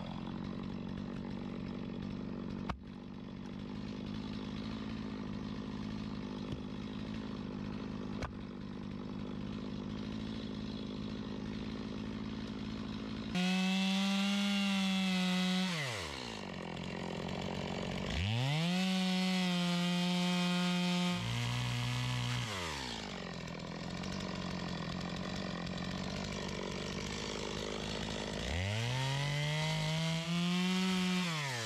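Stihl two-stroke chainsaw idling for about thirteen seconds, then opened up to full throttle three times to cut firewood, its pitch gliding back down to idle after each cut. Near the end of the second cut the engine speed sags lower under load.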